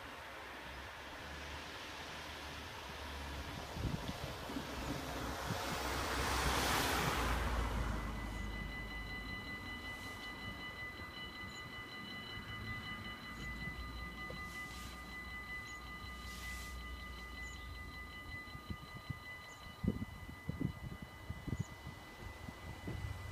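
A car passes over the crossing with a noise that rises and falls, loudest about six to seven seconds in. About eight seconds in, the level crossing's warning bells start ringing steadily and keep on as the half barriers come down, the signal that a train is approaching.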